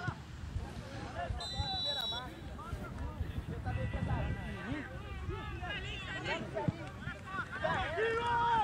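Spectators' and coaches' voices calling and chattering on the sideline of an amateur football match. A short, high, steady whistle sounds about one and a half seconds in.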